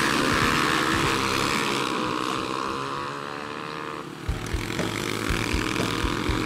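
An engine drone whose pitch slides slowly down and then back up, with soft low thumps in the second half.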